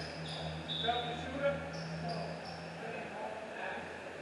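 Basketball gym sounds: a couple of sharp thuds from a bouncing basketball, short high sneaker squeaks on the court floor, and scattered voices over a steady low hum.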